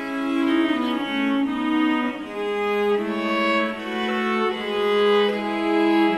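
A quartet of viols (violas da gamba) playing slow, sustained chords in several parts, the harmony changing about once a second, in a resonant hall.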